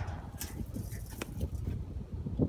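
Ratchet strap being handled: webbing pulled and the metal hook and ratchet knocking, with a sharp click about half a second in and another just over a second in, over a low steady rumble.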